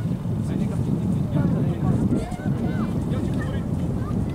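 Wind rumbling on the camcorder's microphone, with scattered distant shouts of young players calling across the pitch.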